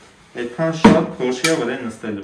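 Two sharp metallic clacks about half a second apart as a Kalashnikov-pattern rifle's mechanism is worked by hand, with a man talking over them.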